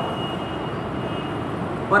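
Steady background noise, an even hiss and rumble with a faint high steady tone in it; a man's voice begins again right at the end.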